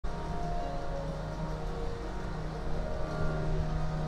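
Harmonium played softly, holding sustained notes that change pitch now and then over a low hum.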